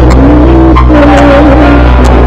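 Live Venezuelan música criolla: a woman's voice holding a long, wavering sung note over harp accompaniment. The recording is very loud, with a heavy booming bass.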